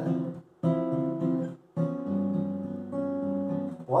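Steel-string acoustic guitar: two chords strummed and left to ring, the first about half a second in and the second a little over a second later, ringing on to near the end. The second chord is a G7 with a sharp eleventh.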